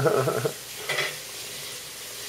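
Hand-washing a new ceramic crock pot insert at the kitchen sink. The wet ceramic gives a wavering squeak under scrubbing that stops about half a second in, followed by a short clatter about a second in.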